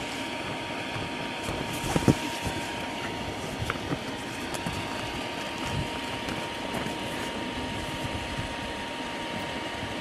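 Steady drone of an inflatable bounce house's electric air blower, with a thin steady tone, and a few soft thumps of a toddler stepping and bouncing on the inflated floor, the loudest about two seconds in.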